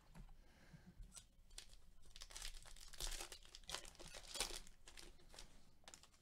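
Faint rustling and scraping of a stack of baseball trading cards being flipped through in gloved hands. The rustles come as a run of short bursts, busiest and loudest in the middle.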